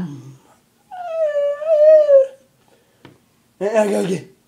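A high, wavering vocal whine, drawn out for about a second and a half and dipping at its end. A short voice sound follows near the end.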